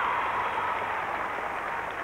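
Arena audience applauding, an even, steady clatter of many hands, with a faint high steady tone that sinks slightly in pitch.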